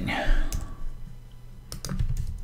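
Computer keyboard keys clicking as a word is typed. There is a single click about half a second in and a quick run of three near the end.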